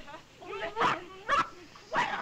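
Dialogue from an early sound film's soundtrack, with two louder, sharp vocal outbursts a little under a second and about a second and a half in.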